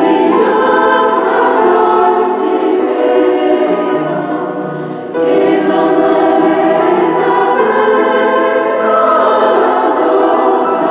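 Mixed choir of men and women singing a choral piece in a stone church, holding long notes. One phrase fades away about four seconds in, and the next enters all together about five seconds in.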